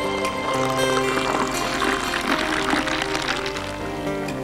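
Background music over beer being drawn from a tap into a glass, the liquid pouring.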